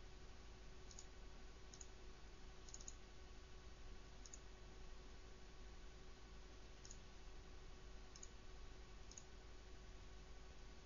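Faint computer mouse button clicks, about eight spread through, one a quick double click near three seconds, over a faint steady hum.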